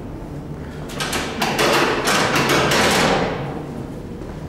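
A run of sharp knocks about a second in, building into a loud, noisy clatter that lasts about two seconds and then fades.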